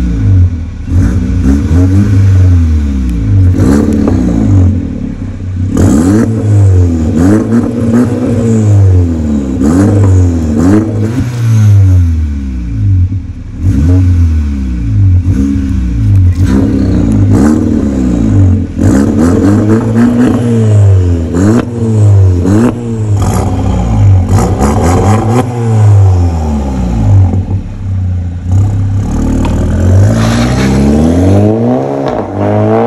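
Skoda Octavia 1.8 TSI turbocharged four-cylinder revved repeatedly through a tuned exhaust, with the resonator removed, an aftermarket muffler and a vacuum bypass valve that is closed at first. The revs climb and fall again every second or two.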